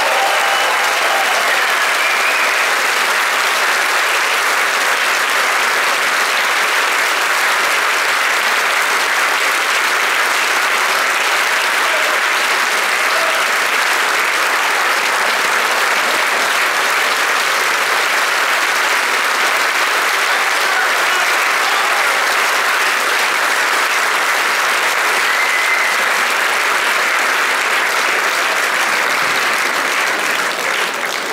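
Large audience applauding steadily and at length, a dense, even clapping sustained for the whole stretch.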